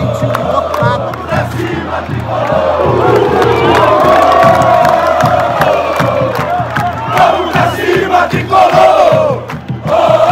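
Football crowd chanting together in the stands. From about four seconds in they hold a long sung "ohhh" that drops away just before the end, over steady low beats about twice a second and hand-clapping.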